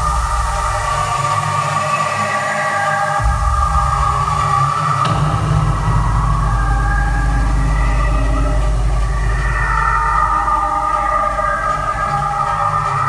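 Live electronic synthesizer music: held synth chords over a deep bass line that fades for a moment and comes back about three seconds in, then shifts again about five seconds in.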